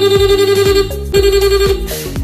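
Aftermarket electronic mimic horn (còi nhại) fitted to an Aima Jeek electric scooter, sounding two loud blasts of a slightly wavering buzzy tone, the first stopping just before a second in and the second following after a short break.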